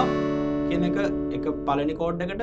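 Open chord on a cutaway steel-string acoustic guitar, struck with a down strum right at the start, ringing on and slowly fading.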